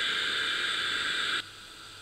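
A steady hissing noise wash closing the music mix, fading slightly and then cut off abruptly about one and a half seconds in, leaving only a faint hiss.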